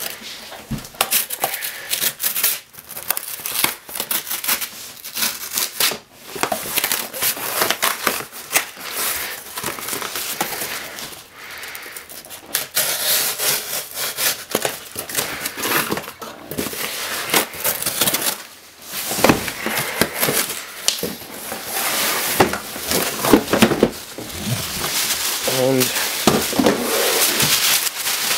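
A cardboard shipping box being opened by hand: flaps pulled back and scraping, with plastic wrapping and packing paper rustling and crinkling, and irregular handling knocks and scrapes throughout.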